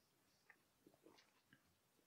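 Near silence, with a few faint soft mouth clicks from tasting a sip of beer.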